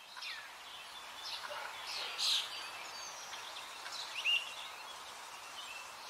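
Birds chirping: scattered short calls and quick upward sweeps over a faint steady hiss, the loudest call a little past two seconds in.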